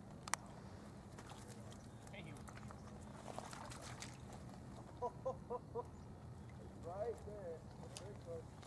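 Faint voices: a quick run of four short, evenly spaced voiced notes about five seconds in and a few gliding voiced sounds around seven seconds, over a low steady hum, with a single sharp click just after the start.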